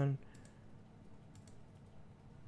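The end of a spoken word at the very start, then a few faint, scattered clicks of a computer keyboard and mouse over low room noise.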